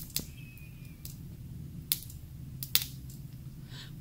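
A few light, sharp clicks from gloved hands handling a glass test tube and a reagent dropper, about three over four seconds, over a steady low hum.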